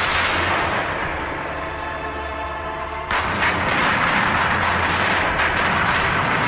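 Gunfire from flintlock pistols and muskets in a film battle. A dense wash of shots and noise fades over the first few seconds, then breaks out again suddenly and loudly about three seconds in, with rapid repeated shots.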